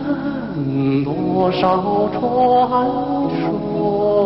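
Music: a slow song with a low, held, chant-like voice over sustained accompaniment, the voice gliding down in pitch about half a second in.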